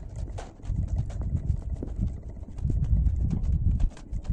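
A Belgian mule's hooves striking snow as it is ridden, giving dull, muffled thuds in uneven clusters.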